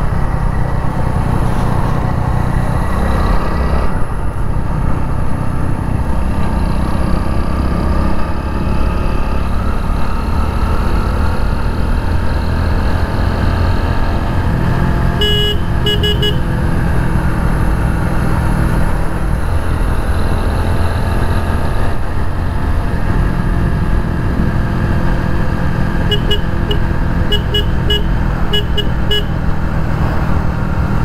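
Splendor motorcycle running steadily on the road, with heavy wind noise on the microphone. A horn gives a few short beeps about halfway through and a longer run of short beeps over the last few seconds.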